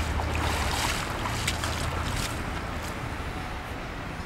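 Pond water sloshing and splashing around a person wading in the shallows and scooping sediment, with a low rumble of wind on the microphone. The splashing and rumble ease off after about two seconds.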